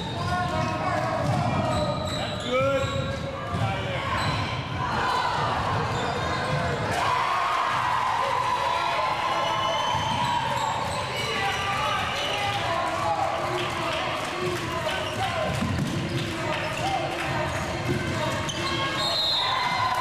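Basketball game in a large gym: a ball dribbling on the hardwood court under a continuous mix of indistinct player and spectator voices.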